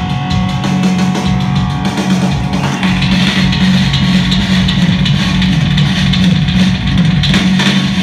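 Rock band playing live and loud: electric guitar, bass guitar and a drum kit with cymbals, with no singing. The drums and cymbals get brighter and busier about three seconds in.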